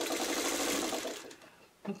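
Vintage black sewing machine running at a steady fast speed, stitching a seam through pieced quilt fabric, then winding down and stopping a little over a second in.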